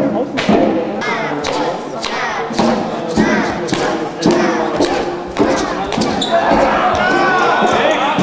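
Judo on tatami mats: irregular sharp thuds and slaps as bodies and feet strike the mats, with voices shouting over them.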